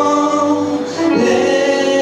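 Live band music: acoustic guitar, electric guitar, upright double bass, keyboard and drums behind long held sung notes, which move to new pitches about a second in.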